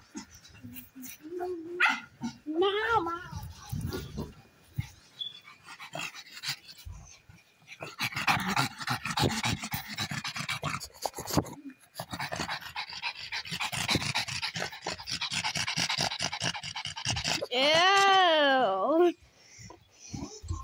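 A dog panting rapidly for several seconds, followed near the end by a loud, drawn-out call with a wavering pitch, about a second and a half long.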